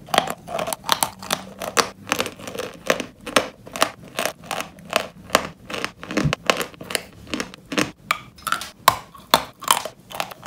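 Close-miked crunching and chewing of a dry, crisp white dessert, with sharp crackling bites about three times a second.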